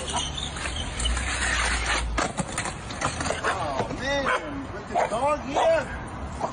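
A skateboard grinds along a concrete ledge: a rough scraping noise over a low rumble, lasting about a second. After that come short rising-and-falling calls of a dog barking, along with a man's voice.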